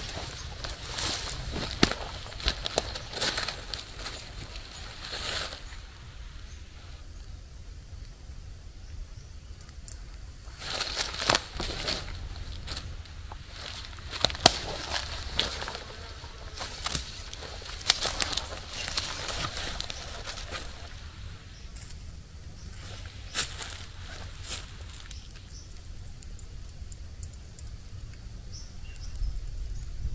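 Hammock tree straps and their metal buckles being handled and threaded: intermittent rustling of the webbing and small clicks, in uneven clusters, with a few footsteps on dry leaf litter.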